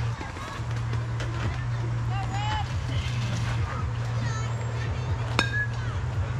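Youth baseball: a metal bat strikes the pitched ball near the end with a sharp ping that rings briefly. Before it there is faint distant chatter over a steady low hum.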